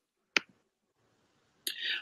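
A single sharp click, a computer mouse click advancing the presentation slide, followed about a second later by a short breath just before speech resumes.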